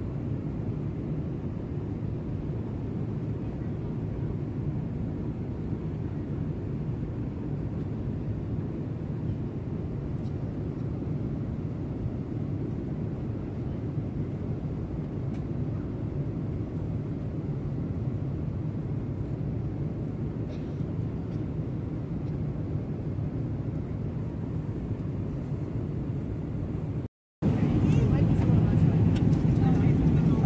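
Steady low rumble of a jet airliner's cabin in cruise flight, engine and airflow noise. About 27 seconds in it drops out briefly and comes back louder.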